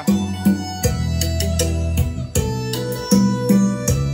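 Recorded music played loud through a pair of Lux Acoustics TW12 12-inch full-range speakers powered by a Lux Acoustics E-7 four-channel amplifier, a speaker demonstration: a strong, steady bass line under a regular beat.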